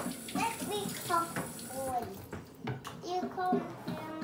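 Kitchen faucet running water into a plastic ice cube tray in a stainless steel sink, a steady hiss that stops about halfway through as the tray is full.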